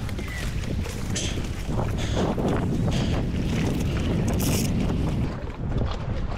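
Wind buffeting the microphone in a steady low rumble, with a few short splashes and knocks of water and hands around an inflatable paddleboard alongside a floating dock.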